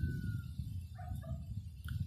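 Faint animal calls in the distance: a thin falling tone at the start, then two short calls about a second in, over a low steady background.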